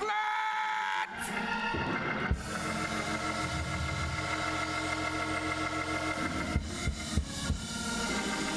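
Organ holding sustained chords, with a bright held note in the first second and a few short knocks late on.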